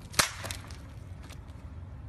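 A single sharp smack of something hitting the pavement hard about a quarter second in, followed by a few faint clicks.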